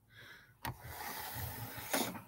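Handling noise: a light knock about half a second in, then rustling for about a second, ending with another light knock.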